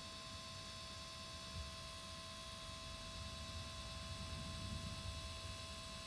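Faint steady hum and low whir of an HP Sprocket ZINK pocket photo printer feeding a print out of its slot, a little louder around the middle.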